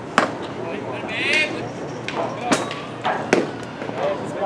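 A sharp leather pop of a baseball hitting the catcher's mitt just after the start, the loudest sound here, followed by two more sharp knocks around the middle and near the end, with faint voices in the background.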